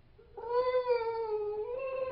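One long, high-pitched drawn-out vocal sound with a steady pitch that steps up slightly a little past halfway.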